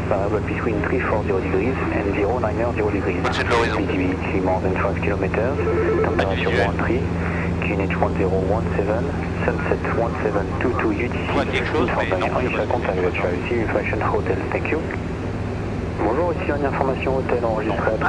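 Steady drone of a Robin DR400's single piston engine and propeller in cruise, heard from inside the cockpit, under almost continuous talking.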